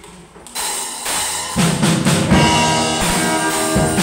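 A live band with a drum kit starting a song: cymbals come in about half a second in, then drum beats and other instruments join about a second later and carry on steadily.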